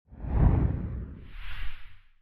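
Whoosh sound effect for an animated end-card title flying in. A heavy, low whoosh swells about half a second in, then a second, higher and airier swish comes near the end and fades out.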